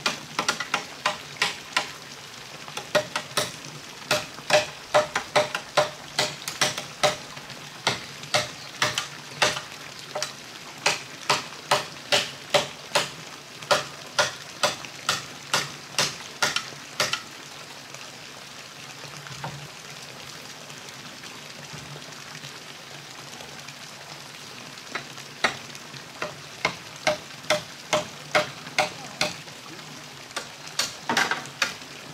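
Hammer driving nails into wooden planks: sharp strikes about two a second, each with a short ring, stopping for several seconds in the middle and then starting again.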